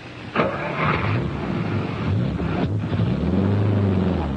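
A car engine running as the car pulls away, its hum rising in pitch and growing a little louder in the second half.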